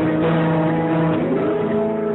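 Acoustic guitar played solo, an instrumental passage of ringing, sustained notes, with one note sliding up in pitch about halfway through.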